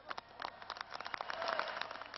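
Crowd applauding, quieter than the speech around it, with separate claps standing out.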